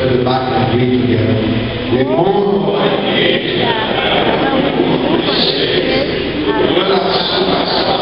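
Voices chanting in a church: for about two seconds a line of steadily held sung notes, then a denser, rougher mass of many voices chanting together from about two seconds in.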